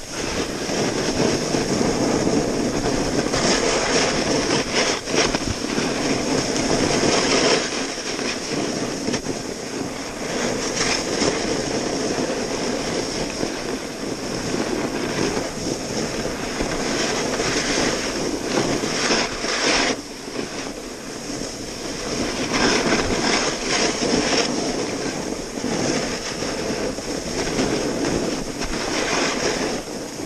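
Snowboard riding down a slope: the base and edges scraping and hissing over the snow without a break, surging louder every few seconds as the board digs into its turns, mixed with wind rushing over the camera's microphone.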